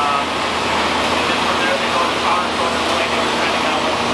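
Steady rush of air with a low hum from a Kemper air-filtration tower's fan running, with faint voices in the shop behind it.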